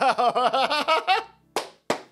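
A man laughing out loud, a quick run of 'ha' pulses lasting about a second, followed by two short sharp sounds near the end.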